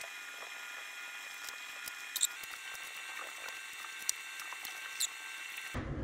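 A few light, sharp clicks of wooden go bars and brace pieces being handled on a go-bar deck during a brace glue-up, over a faint steady electrical hum.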